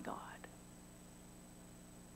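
A woman's spoken word trails off at the start, then near silence: room tone with a faint steady hum and one tiny click about half a second in.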